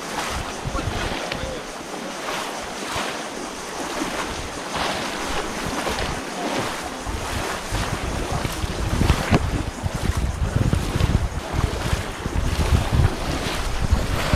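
Shallow muddy water splashing and sloshing as people wade through it, with wind rumbling on the microphone, heavier in the second half.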